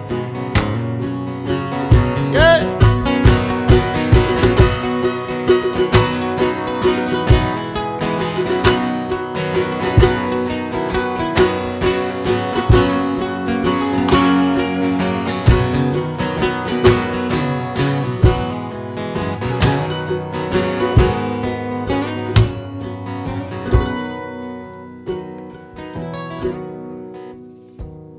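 Acoustic guitars strumming and picking an instrumental passage in a country-folk style, with sharp, rhythmic strum attacks. The playing thins out and grows quieter over the last few seconds.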